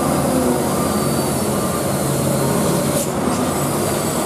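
Hino dump truck's diesel engine working steadily under load as the truck climbs a steep hairpin close by.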